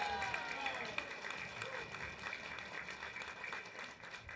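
Crowd applauding: a steady patter of many hands clapping, with faint voices mixed in near the start.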